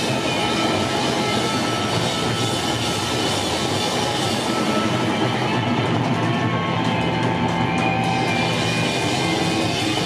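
Punk band playing live and loud: electric guitar, bass guitar and drum kit together in a dense, steady wall of sound.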